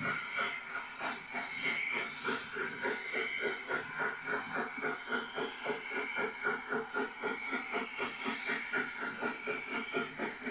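Steam locomotive working hard with a heavy train, its exhaust beats chuffing in an even rhythm of about three to four a second, with a steady hiss of steam.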